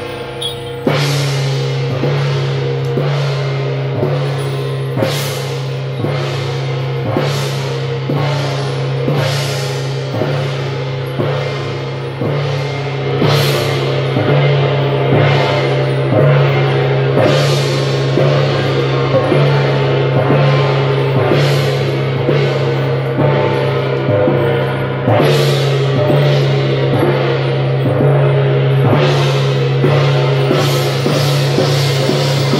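Taiwanese temple-procession gong-and-drum accompaniment: a hand gong and drums struck in a steady beat about twice a second, over a steady low drone. It gets a little louder about halfway through.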